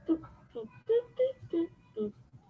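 A person's voice making a string of about six short pitched syllables, not words.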